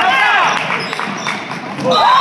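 Basketball being dribbled on a hardwood gym floor, a few bounces in the middle, with spectators' voices shouting over it at the start and again near the end.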